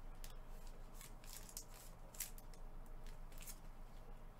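Faint crinkling and clicking of stiff clear plastic as gloved hands handle a trading card in its plastic holder and sleeve: a string of short, sharp ticks and rustles.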